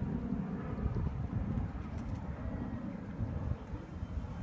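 Doves cooing softly over a continuous low rumble.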